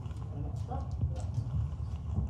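Indistinct voices in a room over a steady low rumble, with a few short sharp clicks scattered through.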